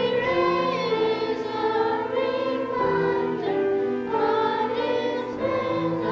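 Combined church choir of adults and children singing an anthem in sustained, legato phrases, accompanied by piano.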